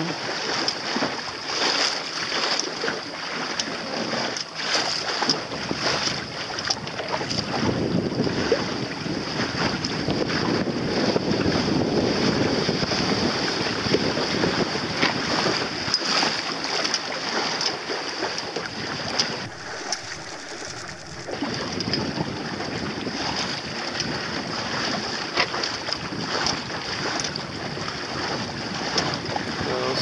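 Wind buffeting the microphone over the rush and slap of water against a small boat's hull as it moves through light chop, with a brief lull about twenty seconds in.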